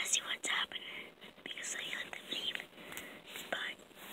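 A person whispering in short, breathy bursts.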